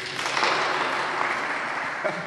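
Audience applauding at the end of a live song. The applause swells quickly, is loudest about half a second in, then slowly dies down.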